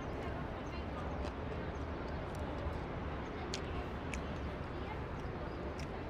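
Ambience of a busy open-air eating area: a steady background hum with a faint murmur of other diners' voices, broken by a few short, light clicks.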